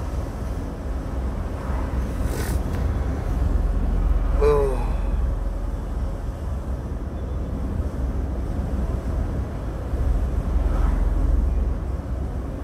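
Steady low engine and road rumble heard from inside a moving lorry's cab, with a brief hiss about two and a half seconds in and a short voice sound at about four and a half seconds.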